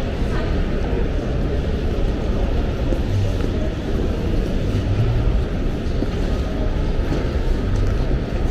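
Airport terminal hall ambience: a steady low rumble with indistinct voices in the background.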